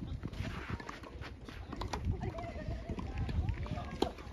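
Footsteps and shuffling of tennis players on a sand-dressed artificial grass court, a string of short taps and scuffs, with faint voices in the distance.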